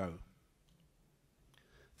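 The last syllable of a man's sentence through a handheld microphone, then a pause of near silence with a few faint clicks.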